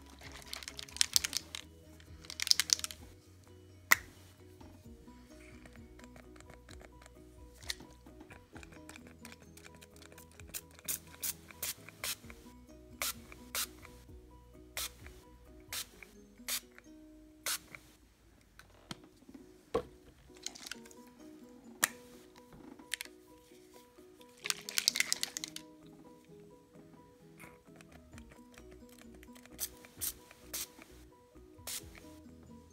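Background music, with short hissing bursts from a fabric spray-paint bottle twice in the first few seconds and again near the end. Scattered sharp clicks run between the bursts.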